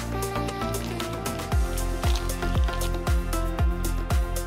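Background music with a steady beat: a deep kick drum about twice a second, louder from about a second and a half in, under a ticking hi-hat and sustained tones.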